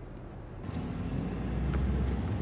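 Low rumble of a car driving, heard from inside the cabin, coming in just under a second in and growing steadily louder.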